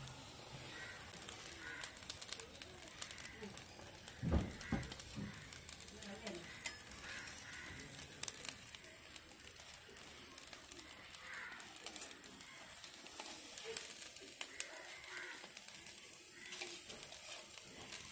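Faint clicks and scrapes of a metal spatula against a wire grill mesh while fish are turned over charcoal, with a dull thump about four seconds in.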